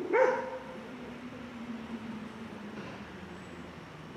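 A dog barks once, short and sharp, right at the start, over faint street ambience. A low steady hum follows and fades away over the next couple of seconds.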